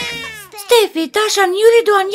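A young girl's high-pitched voice in a string of short, rising-and-falling syllables without clear words; a held sound fades out in the first half second before the syllables begin.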